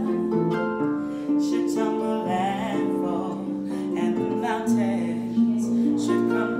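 Concert pedal harp playing ringing plucked chords and bass notes, accompanying a woman singing with vibrato.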